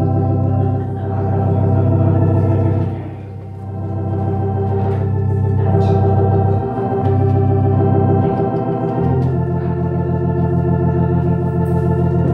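Organ playing slow, sustained chords, with a pulsing tremolo on some held notes; the chord and bass note change about three seconds in and again around seven and nine seconds.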